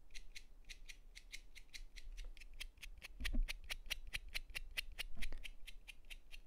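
Hobby knife blade being scraped quickly back and forth across the palm of a hand to clean it, a fast, even run of faint, short scraping strokes, about seven a second.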